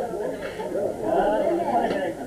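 Speech: people talking, with several voices overlapping.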